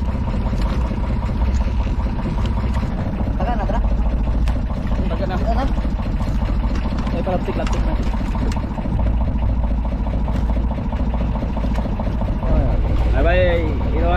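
Outrigger boat's engine running steadily at low speed: an even, continuous low drone.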